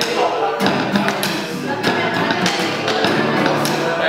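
Acoustic guitar strummed while drumsticks beat a steady rhythm on the lid of a hard-shell flight case used as a drum, with voices singing along.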